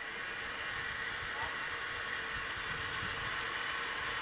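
Steady background hiss with a faint hum from an open microphone and sound system, with no one speaking into it.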